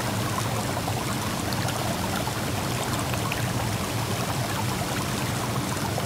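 Stream water running and splashing over rocks, a steady rush that holds at one level.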